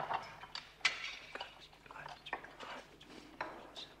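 Quiet film soundtrack: irregular light clicks and knocks with faint murmured voices beneath them.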